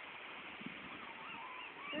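Faint seabird calls from the cliffs below: short, thin, arching whistles repeated over and over, over the steady wash of the ocean.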